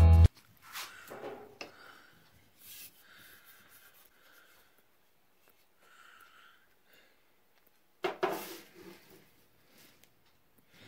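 Intro guitar music cuts off just at the start. Then a quiet workshop room with faint handling and rubbing noises from a wooden closet rod being held and turned in the hand. The loudest of these is a short rustle about eight seconds in.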